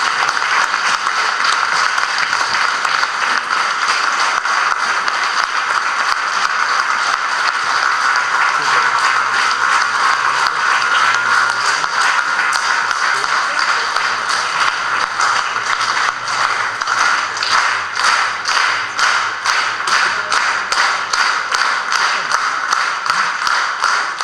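Audience applauding continuously. About two-thirds of the way through, the clapping falls into a steady unison rhythm of about two claps a second.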